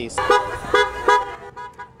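Car horn honking, held for about a second and a half.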